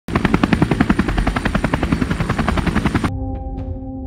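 A fast, even train of chopping pulses, about a dozen a second, that cuts off suddenly about three seconds in; a steady low musical drone follows.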